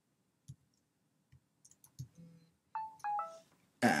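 Computer keyboard keys clicking a few times as short, separate strokes. About three seconds in comes a short run of three falling electronic tones.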